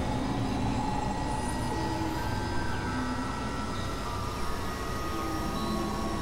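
Dense experimental noise-drone audio made of several music tracks layered at once: a steady rumbling wash with held tones that change pitch every second or so.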